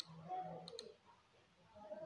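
Computer mouse clicking during a pause in the narration: one sharp click at the start, then two quick clicks close together just under a second in.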